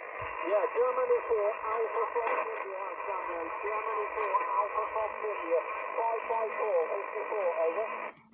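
A distant ham radio operator's voice received over single-sideband on the 40-metre band, coming from a portable QRP transceiver's speaker: thin, narrow-band speech over a steady hiss. It cuts off abruptly just before the end.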